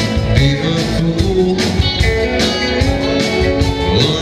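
Live rock band playing an alt-country song: electric guitars, upright double bass and a drum kit keeping a steady beat.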